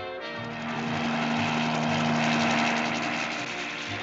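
Cartoon sound effect of an engine passing by off screen: a drone that swells to its loudest about halfway through and then fades, under the musical score.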